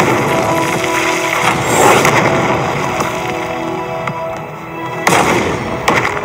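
Film soundtrack music with whooshing sound-effect swells, and two sharp hits near the end.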